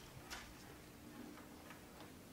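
Near silence: room tone with a faint hum and a few soft clicks.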